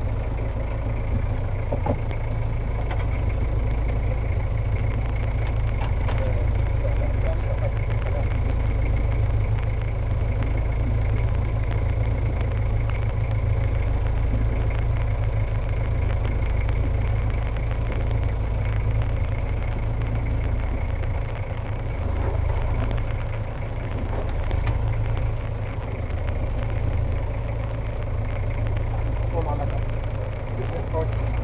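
A fishing boat's engine idling steadily: a continuous low hum.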